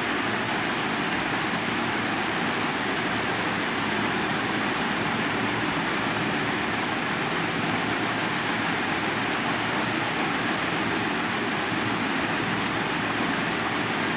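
Steady, even rushing background noise with no distinct events in it.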